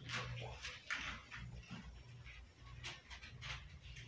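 A pit bull walking over to its handler and sitting down: a few faint, soft clicks and shuffles of its paws on the floor, over a low steady hum.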